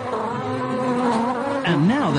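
A bee buzzing: a steady, slightly wavering drone that swoops up and down in pitch near the end.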